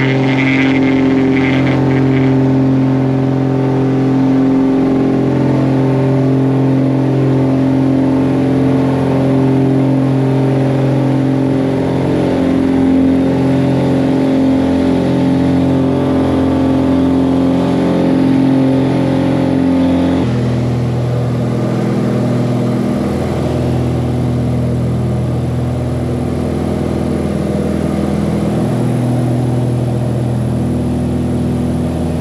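Engines of a small twin-engine propeller aircraft, heard from inside the cabin, giving a loud, steady drone. About two-thirds of the way through, the drone changes abruptly to a lower pitch.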